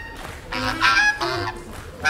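Reed instruments in free-jazz improvisation, playing short honking, squawking notes with slight pitch bends, starting about half a second in.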